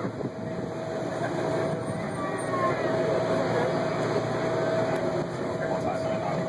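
Vehicle engine running steadily, with a constant hum over a low mechanical rumble.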